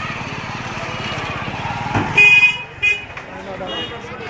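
A vehicle horn honks twice about two seconds in, a longer beep and then a short one, over a nearby engine running and general street noise.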